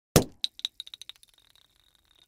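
A sharp knock, then a run of clicks that come quicker and fainter as a small hard object bounces and settles on a hard surface, with a thin high ring lingering after.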